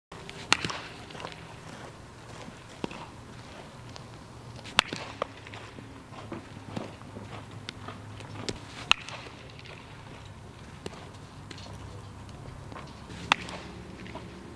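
Baseball infield practice: four sharp cracks of a baseball being struck or caught, about four seconds apart, with lighter knocks between them over a steady low hum.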